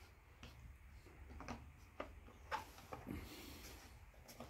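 Near silence: a quiet pause with a few faint, scattered clicks and taps of handling.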